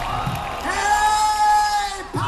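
A man's amplified voice holding one long sung call over a stadium PA, starting about half a second in, above a cheering crowd.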